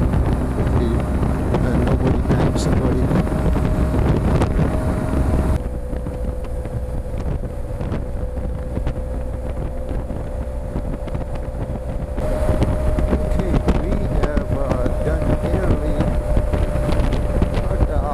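BMW R1200 GSA boxer-twin engine running at a steady highway cruise, mixed with heavy wind noise on the bike-mounted microphone and a steady note held throughout. The sound drops to a quieter, duller rush for several seconds in the middle, then comes back.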